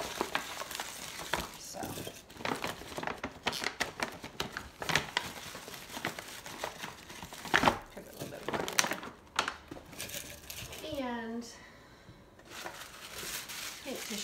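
Paper gift bags, tissue paper and candy packaging rustling and crinkling as they are handled, with irregular crackles and a few light knocks on the table.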